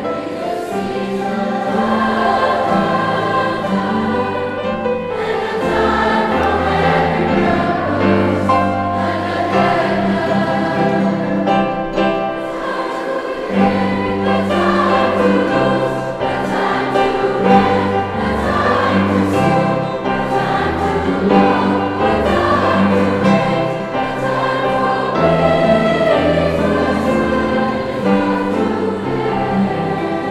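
Large school choir of young voices singing together with piano accompaniment, sustained notes over a steady low accompaniment.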